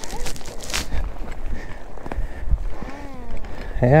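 Footsteps pushing through tall dry grass, with irregular low thuds and the rustle of stems brushing past. A faint voice is heard briefly near three seconds in.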